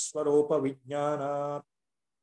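A man chanting a Sanskrit verse in a steady recitation tone. Near the end he holds one note for about half a second, then breaks off abruptly into silence.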